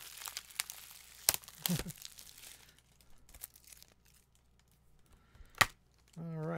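Plastic shrink wrap being torn and peeled off a 4K Blu-ray case, crinkling and crackling for the first couple of seconds, then a few faint ticks and one sharp click near the end.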